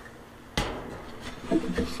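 A single sharp knock about half a second in, followed by a low rubbing, scraping noise. A man's voice starts up near the end.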